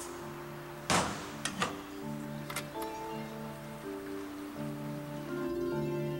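Background music with held notes and plucked tones. About a second in comes one loud heavy thunk, the steel safe door slamming shut, followed by a few lighter metallic clicks.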